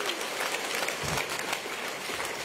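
A crowd applauding in a large hall, a dense patter of many hands clapping, with a low bump or two about a second in.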